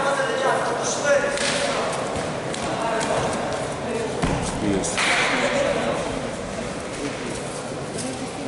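Indistinct shouting from coaches and spectators around a full-contact bout, with a sharp smack about a second in and a dull thud a little after four seconds.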